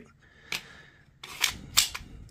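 Sharp clicks of a polymer pistol magazine being handled and seated into a Mossberg MC2C's grip: one click about half a second in, then two more close together near the end.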